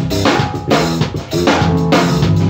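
A small live band playing: a drum kit keeps a steady beat of kick and snare strikes, under a low electric bass line and keyboard chords.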